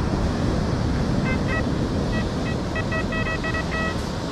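XP Deus 2 metal detector beeping on a buried target that reads 92, taken for a coin. The short, high beeps start about a second in and come faster near the end. Steady surf and wind noise runs underneath.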